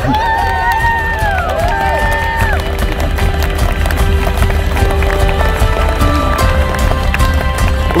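Wedding guests whooping and cheering in high voices during the first couple of seconds, over background music with long held notes and a steady low rumble underneath.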